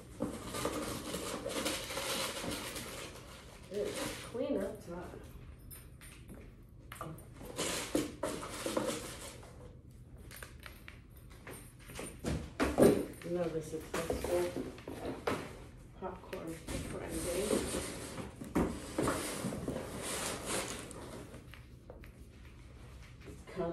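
A woman's voice in short stretches in a room, mixed with rustling and knocking as things are handled and put away.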